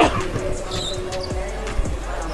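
A basketball being dribbled on a hardwood gym floor, a string of short low thumps, with background music playing underneath.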